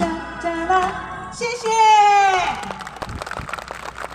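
A woman singing live into a microphone over band accompaniment, holding one long note in the middle that fades out about two and a half seconds in.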